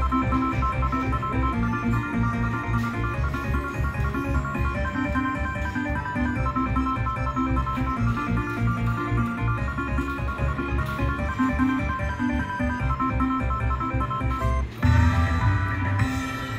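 Buffalo Gold slot machine playing its electronic win tune as the win meter counts up after the gold-coin bonus symbols land. The tune changes suddenly about fifteen seconds in, as the free-games bonus is announced.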